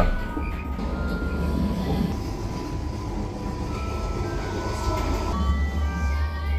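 Steady rumble of a moving railway carriage, a recorded ride soundtrack played through the speakers of a stationary train-compartment exhibit, with faint music under it. Music with a deep bass comes in near the end.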